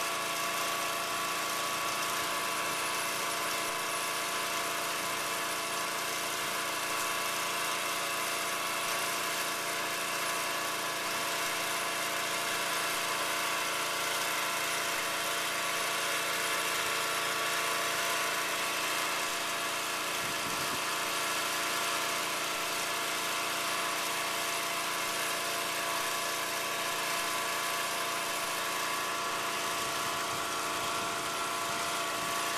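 Small engine of a portable winch running steadily at constant speed.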